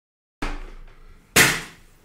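Two sudden thumps about a second apart, the second louder, each dying away over about half a second.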